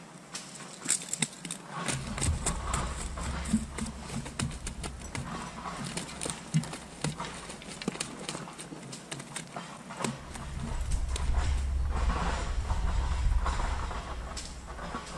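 Irregular close clicks, taps and knocks from hands working fishing gear, over a low rumble that comes in about two seconds in and grows louder after about ten seconds.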